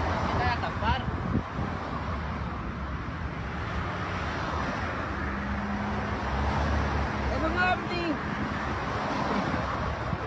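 Steady outdoor road-traffic noise with wind rumbling on the microphone; a low engine-like hum rises in the second half.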